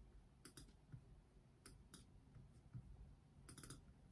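Near silence broken by a few faint clicks at a computer: a pair about half a second in, two more near two seconds, and a quick run of clicks near the end.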